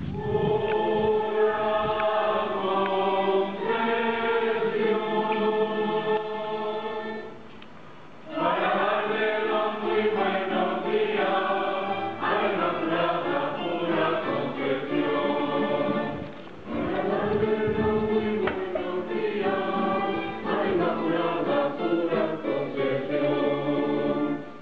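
Choir singing a slow hymn in several voices, in long phrases that break off briefly about 8 and 16 seconds in.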